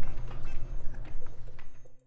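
Low-profile 3-ton hydraulic floor jack being pumped by its long handle, with clicks and knocks from the strokes as it raises the front of the car from the centre jack point, over a low rumble. The sound cuts off suddenly at the end.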